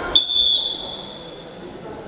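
A referee's whistle blown once: a high, steady tone lasting about half a second that fades out in the hall by about a second in, the signal for the wrestlers to start.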